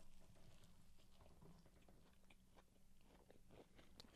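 Faint chewing of a Cajun fried-chicken filet biscuit: a man bites in and chews, with soft scattered clicks and crunches.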